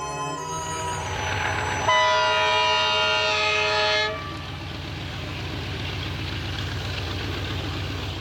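A DF11 diesel locomotive sounds its horn, a loud chord of several steady tones held for about two seconds. After that comes the steady rumble of the locomotive and its passenger coaches running past.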